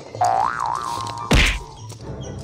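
Cartoon 'boing' sound effect, a springy tone that wobbles up and down and then holds, followed a little over a second in by a loud whack sound effect.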